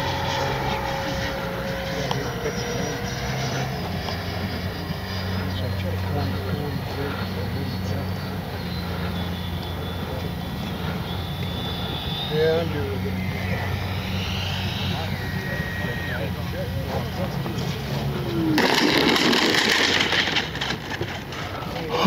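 Electric ducted fan of an RC jet (80 mm 12-blade fan on an inrunner brushless motor) whining in flight, its high tone stepping up and down as the throttle changes. About 18 seconds in, a louder rush of fan noise lasts two or three seconds as the jet comes in low to land.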